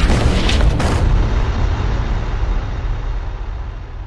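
Logo-reveal sound effect: a deep cinematic boom with a few sharp hits in the first second, then a low rumble that slowly fades away.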